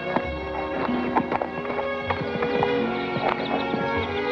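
Film score music playing, with a few irregular hoof clops from a horse stepping on packed dirt.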